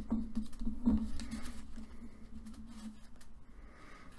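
Sheet of printer paper rustling and creasing as a paper airplane's tail fin is folded up and pressed flat by hand, with a few soft scratchy clicks, the loudest about a second in. A faint low hum lies underneath and fades out before the end.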